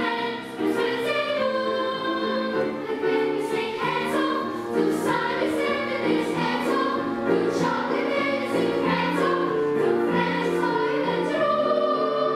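A children's choir singing together in sustained, held notes over a musical accompaniment with a light, regular beat.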